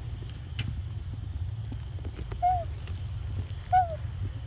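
Two short animal calls, each a brief clear note falling slightly in pitch, the second a little longer, over a steady low rumble.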